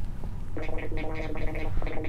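Electronic sound effects from a tablet finger-painting app, set off by a child touching the screen: a steady tone held for about a second, a short click, then a second similar tone.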